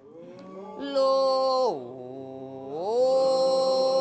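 A voice singing one long held note that swells about a second in, slides down to a lower note, holds it for about a second, then slides back up to the first pitch.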